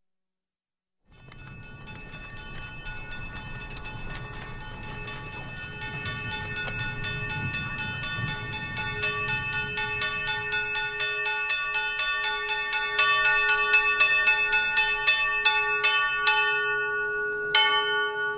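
Bells struck in quick succession, their ringing tones overlapping and growing louder, over a low rumble that fades out about halfway through; one sharper strike near the end.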